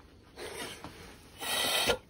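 Breath blown through a copper pigtail siphon taken off a steam boiler's pressure control: a soft puff about half a second in, then a stronger rush of air through the tube that cuts off near the end. Air passes freely, showing the pigtail is clear, so the fault lies with the pressuretrol.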